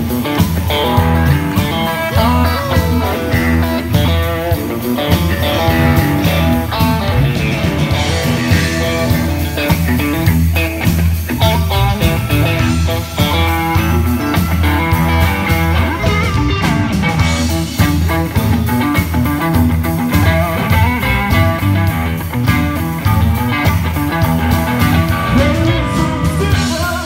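Live blues played loud on an amplified Stratocaster-style electric guitar: a lead line of quick notes with some string bends over a steady low accompaniment, without a break.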